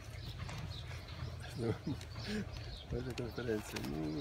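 A man's voice making quiet, hesitant murmurs twice, over a steady low background rumble.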